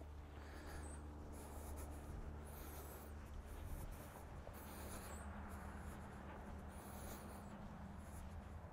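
Faint rustling of footsteps on grass as a man and a dog walk at heel, over a low steady hum, with a few faint high-pitched wavering sounds.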